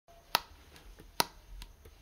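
Two sharp finger snaps a little under a second apart, keeping an even tempo as a count-in just before the band starts playing.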